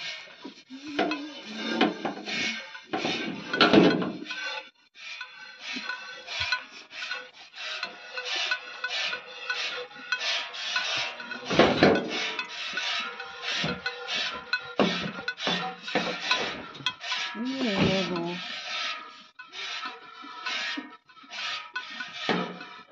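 A cow being milked by hand: milk squirting into a pail in a steady rhythm of strokes.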